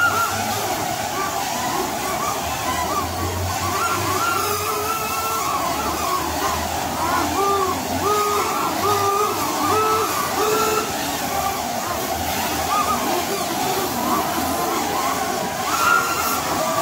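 Several drone soccer balls, small quadcopters inside spherical cages, buzzing together in flight: a steady whir of many propellers, with motor pitch stepping up and down as they manoeuvre.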